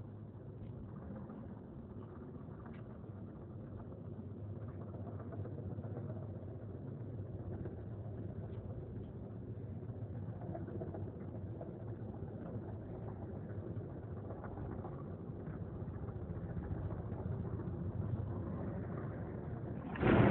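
A steady low rumble of background noise, like distant traffic, with a few faint clicks and knocks.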